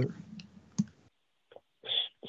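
A voice trails off into a short pause holding two faint clicks, and near the end a man starts speaking again.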